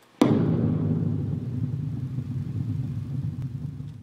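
A sudden deep boom that rumbles on and slowly fades over several seconds.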